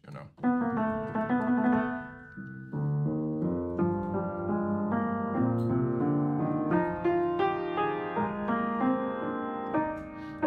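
Upright piano played with both hands: a chord about half a second in, then from about three seconds a slow sequence of overlapping chords and moving notes, sketching a passage in close intervals of a whole step.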